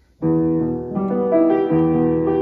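Upright piano starting to play about a quarter second in: a slow run of held chords, the notes changing about every half second.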